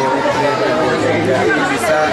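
A man speaking Indonesian close to the microphone, with a crowd chattering around him.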